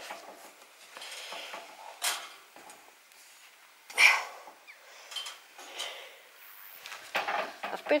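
Someone climbing over a galvanised steel field gate: clothing and hand scuffs on the metal rails, with a sharp knock about two seconds in and a louder clank about four seconds in.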